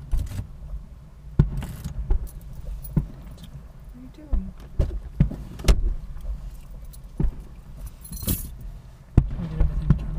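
Aerial fireworks display: a run of about a dozen sharp, irregularly spaced bangs and pops over a steady low rumble, with a brief crackle shortly after the eighth second.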